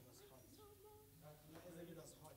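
Faint voices talking quietly, with no music playing.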